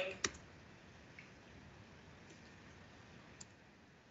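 A single sharp computer click just after the start, as when advancing a presentation slide, then faint room tone with a much fainter tick near the end.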